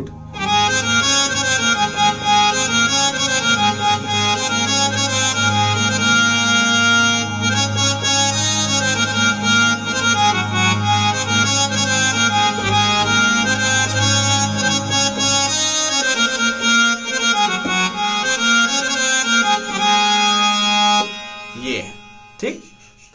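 Roland XPS-30 synthesizer keyboard on its "Harmonium 1" patch, playing a reedy melody over held chords, both hands on the keys. It plays for about 21 seconds and stops shortly before the end.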